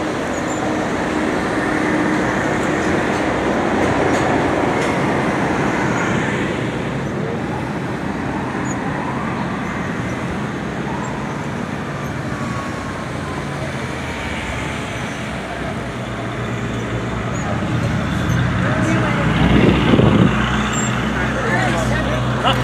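Busy city street din: steady traffic noise mixed with background voices. A low steady hum joins in and the sound grows louder near the end.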